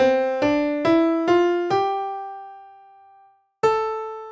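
Piano playing the A natural minor scale upward, one note about every half second, stopping on the seventh degree (G natural), which rings out and fades; after a short gap the upper A sounds about three and a half seconds in. With no leading tone a half step below the tonic, the held seventh is far less urgent in its pull toward the A.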